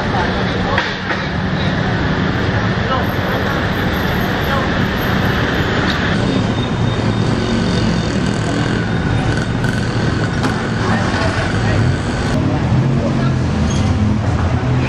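Busy street ambience: steady traffic with engines running and indistinct voices of people nearby. The mix changes abruptly about six seconds in and again near the end.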